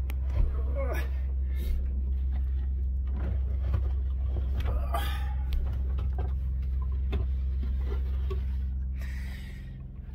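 A man squeezing into a cramped compartment on a boat: clothing rustling, scattered knocks and bumps against the panels, and a few short grunts of effort, over a steady low hum that drops away near the end as he gets inside.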